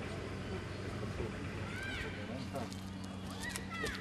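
Outdoor ambience of indistinct, distant voices over a steady low hum, with a few short high chirps about two seconds in and again near the end.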